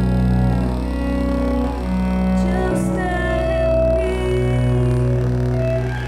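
Cello being bowed, playing long sustained notes with slides between pitches over a steady deep bass drone.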